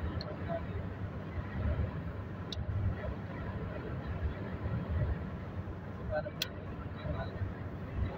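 Steady low rumble of road and engine noise heard inside a car moving at highway speed.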